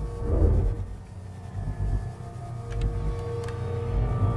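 Low, ominous rumbling drone from a horror trailer's sound design, with thin held tones over it and a few faint clicks about three seconds in.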